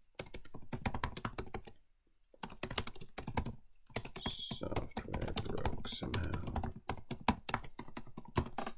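Typing on a computer keyboard: quick runs of keystrokes, with a short pause about two seconds in.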